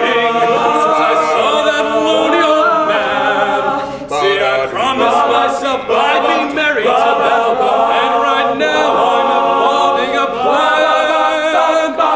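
All-male a cappella group singing in close harmony, several voices together without instruments, with a brief drop about four seconds in.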